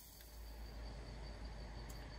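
Night insects chirping in a steady, rapidly pulsing high trill, over a low rumble.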